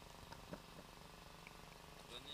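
Near silence: a faint steady low hum with one faint click about half a second in.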